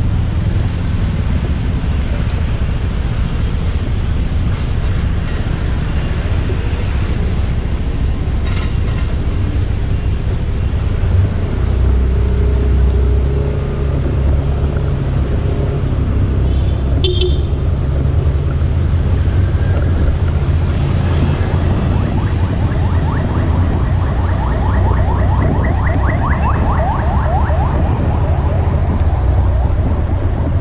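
Wind buffeting a moving camera's microphone as a steady low rumble, over passing car traffic on a city road. In the last few seconds a fast run of light ticks comes and goes.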